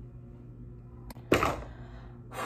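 A plastic makeup compact being handled: a small click about a second in, then a short, sharp knock, over a faint steady hum.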